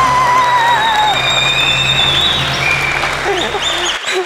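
Celebratory quiz-show music over studio-audience applause, marking a right answer. A wavering tone fades about a second in, and sustained high notes then hold over a low drone.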